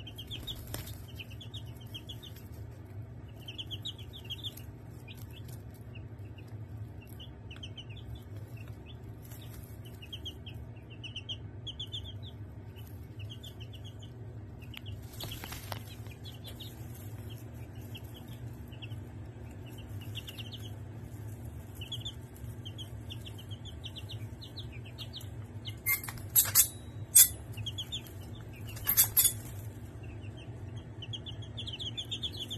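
Five-day-old Barred Rock and Australorp chicks peeping steadily, in short high chirps over a low steady hum. Near the end come several loud, brief rustles.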